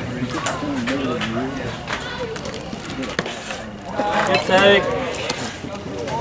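Indistinct voices of people nearby talking and calling out, with one louder, raised voice about four seconds in.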